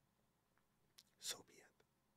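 Near silence, broken about a second in by a faint mouth click and a short, breathy, whisper-like sound from a man's voice.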